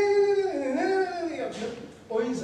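A man's voice over a microphone, drawn out into a long, wavering, high-pitched sound rather than words; it breaks off about a second and a half in.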